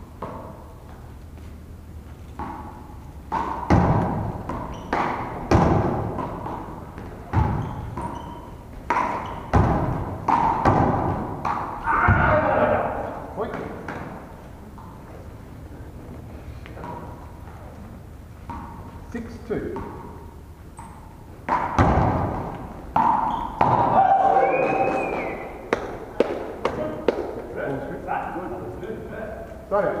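A one-wall handball rally: the ball is slapped by hand and thuds against the wall and the gym floor in a quick series of sharp hits, each echoing in the hall. There are two bursts of play, one from a few seconds in to about the middle and another in the last third.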